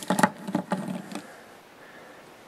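Light clicks and taps from a diecast toy monster truck being turned in the hands, several in quick succession over about the first second.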